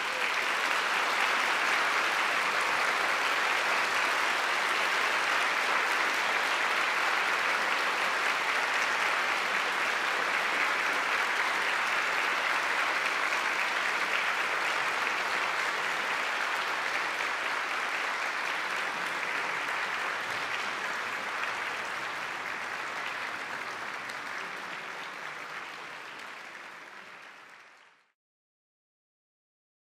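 An audience applauding steadily, fading out gradually over the last several seconds.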